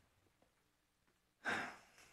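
Near silence, then about a second and a half in a man lets out one short sigh, a breath out just before he speaks into a telephone.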